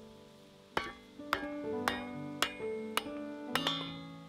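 Hammer blows driving a piece of firewood down onto the blade of a kindling splitter: about seven sharp knocks with a metallic ring, roughly two a second, starting a moment in, the last two in quick succession. Soft background music plays throughout.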